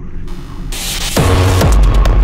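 Electronic drum-and-bass music: a noisy, rumbling build swells, then about a second in a heavy bass drop hits, with bass tones sweeping downward.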